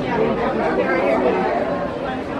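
People chattering indistinctly: overlapping voices with no clear words, going on steadily throughout.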